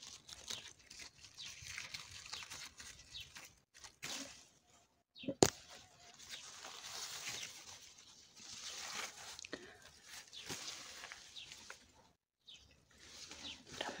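Rustling and crackling of raspberry leaves and stems being brushed through at close range, with a single sharp knock a little over five seconds in.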